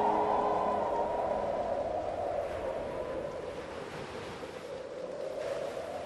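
The last held notes of choral music die away in the first second, leaving a steady rushing noise that slowly fades.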